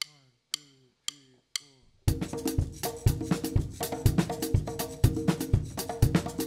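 Four sharp clicks about half a second apart count the band in. About two seconds in, a live instrumental afrobeat and reggae-dub band comes in together, drum kit and percussion playing a steady beat under held chord tones.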